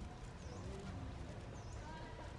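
Steady outdoor background noise with two short, high chirps, about a second apart.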